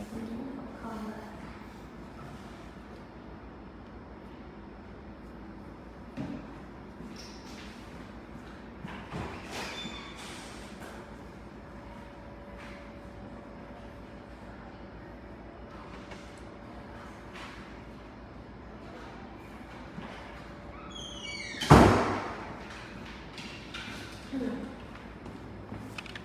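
Low, steady room noise with a few faint clicks, broken about 22 seconds in by one loud, brief thud with a scrape.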